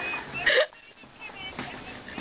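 A person's voice: quiet, broken speech sounds with one short, loud vocal burst about half a second in.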